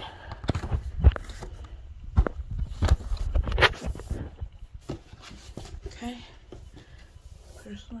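Cardboard product box being lifted and turned over by hand: a run of knocks, scrapes and dull thumps, densest in the first four seconds and quieter after.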